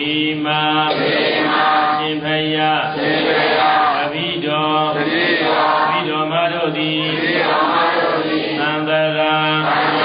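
A Buddhist monk chanting: a steady recitation held largely on one pitch, broken into short phrases.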